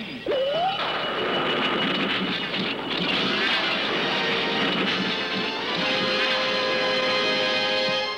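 Cartoon transformation sound effect as two magic rings are struck together: a short rising sweep, then a long rushing noise layered with dramatic music, with held chords building near the end.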